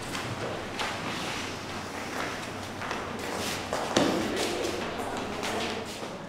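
Several people moving about on a wooden floor: irregular footsteps, shuffles and thuds, with a sharper thud about four seconds in and some indistinct voices.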